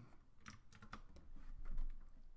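A handful of irregular keystrokes on a computer keyboard.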